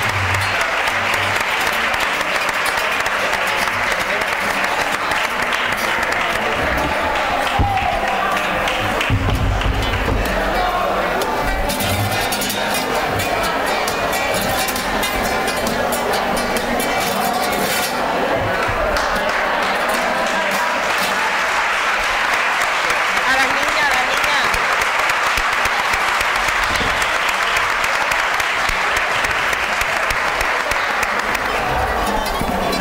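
An audience applauding steadily, with voices over it.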